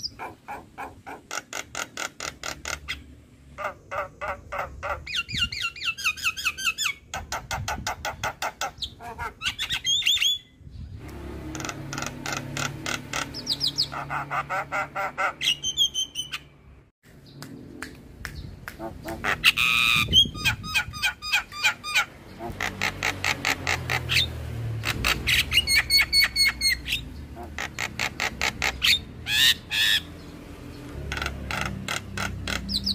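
Javan myna calling in long runs of rapid, harsh repeated notes, about five a second, broken by a few short pauses.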